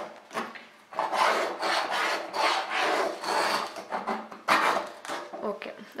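A flat steel spatula scraping against the inside of a stainless steel saucepan as it stirs a frothy liquid. The metal-on-metal rasping comes in repeated strokes, a little more than one a second, and thins out near the end.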